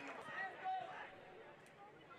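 Faint distant voices, with the low hum of an open-air field behind them.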